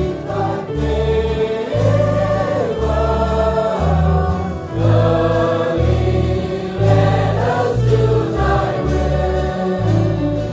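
Choir singing gospel music over instrumental backing with a sustained bass line that changes note every second or so.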